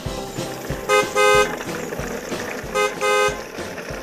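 A vehicle horn honking twice over, each time a short toot then a longer one, about two seconds apart, over a steady drum beat.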